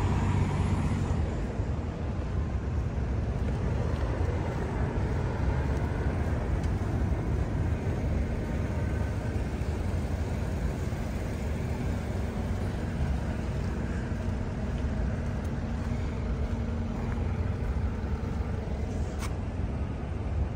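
Steady low rumble of road traffic and idling vehicle engines on a city street, with no single event standing out.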